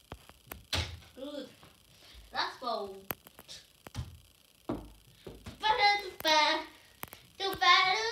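A few short thunks of tennis balls thrown at plastic scoop cones on a sofa, between brief bits of children's voices. Then a child gives two loud, high-pitched, drawn-out shouts in the second half.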